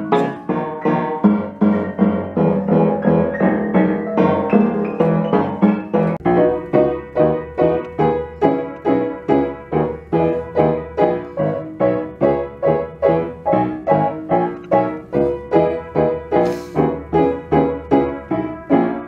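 Upright piano being played by hand. It opens with fuller held chords, then settles into a steady, even rhythm of repeated struck notes, each dying away before the next.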